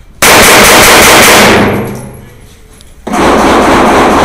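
Two strings of rapid pistol fire from a Glock, each about a second and a half long, the shots running together. They are loud enough to overload the microphone.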